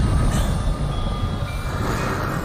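Loud, low rumbling cartoon sound effect of Eda's curse flaring up as her hands turn into claws.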